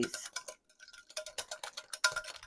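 Wire whisk clicking against a glass mixing bowl while softened cream cheese is stirred: a run of quick light clicks that thins out for a moment near the middle.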